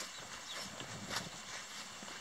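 Footsteps on grass and the rustle of a handheld phone moving, with a light click about a second in.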